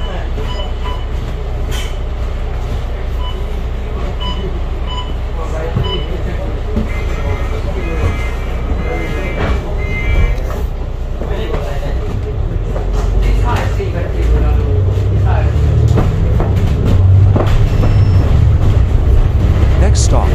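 Alexander Dennis Enviro500 double-decker bus's diesel engine rumbling at idle at a bus stop, then growing louder over the last several seconds as the bus pulls away. Short electronic beeps sound repeatedly in the first few seconds.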